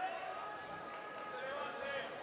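Faint background murmur of an arena crowd, with scattered distant voices and no loud events.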